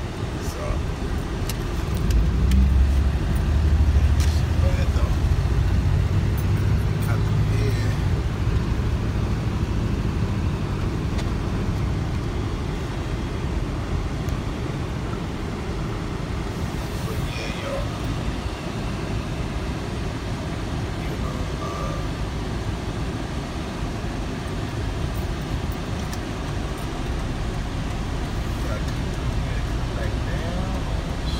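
Car driving on city streets, heard from inside its cabin: a steady engine and road-noise rumble, deepest and loudest from about two seconds in until about eight seconds, then settling lower.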